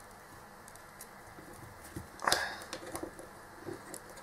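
Faint handling noise of fingers working a wire into a wooden box mod: a few small clicks and rubs, with one short louder rustle about two seconds in.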